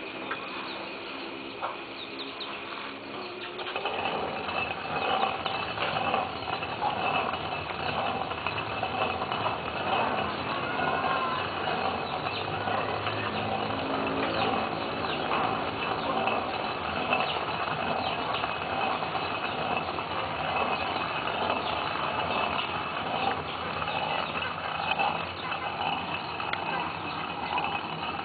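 Stone hand mill grinding dried mung beans: the upper stone is turned round on the lower one by its wooden handle, giving a continuous rough grating and crunching of stone on stone and cracking beans, which starts about four seconds in.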